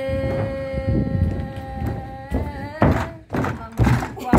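A woman holding one long, steady sung note of a Dao folk song, which ends a little past halfway. It is followed by a few loud thumps and knocks as the camera is jostled.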